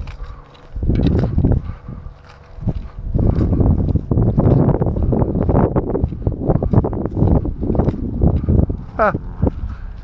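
Footsteps through grass, with wind buffeting the microphone, in dense uneven bursts; a brief spoken 'ah' near the end.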